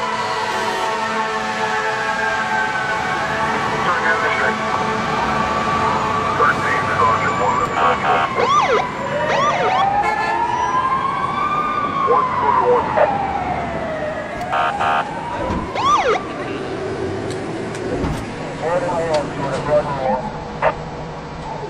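Emergency vehicle sirens, several overlapping: held tones drifting slowly in pitch, a long slow wail rising and falling through the middle, and quick whooping sweeps at a few points.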